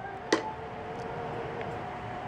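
A single sharp plastic click about a third of a second in as a baby presses on a pop-up toy's door, over a faint steady background hum.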